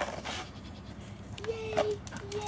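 A dog panting as it runs with a toy in its mouth, breathy puffs of air. A short, steady, high-pitched tone sounds near the end.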